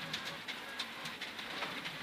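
Mitsubishi Lancer Evo X rally car at speed on a gravel road, heard inside the cabin: engine and road noise, with loose gravel pattering and clicking against the car.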